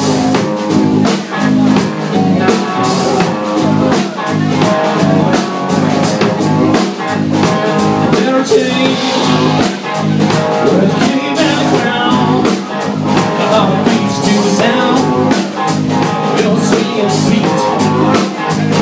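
Three-piece rock band playing live: electric guitar, electric bass and drum kit, loud and continuous, with a steady drum beat.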